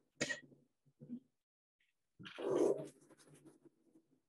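Sliding chalkboard panels rumbling and knocking in their tracks as they are pushed up and down, in a few short bursts, the loudest about two and a half seconds in.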